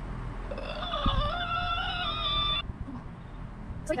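A woman's high-pitched, wavering whimpering hum, held for about two seconds and then cut off abruptly. It is a nervous sound as she tries a lipstick shade she is scared of.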